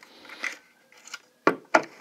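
A hard plastic battery case lid and its cable being handled: a soft rub, then two sharp plastic clicks close together near the end.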